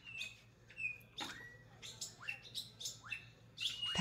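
Faint short chirps, like small birds, about six of them scattered through the pause, each a quick rising sweep in pitch, over a faint low hum.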